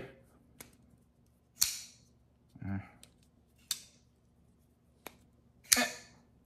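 Folding pocket knife being opened and closed by hand: several sharp metallic clicks of the blade swinging and locking, a second or two apart, the loudest near the end. The open-and-close action is a little weird, in the owner's judgement, perhaps adjustable at the pivot.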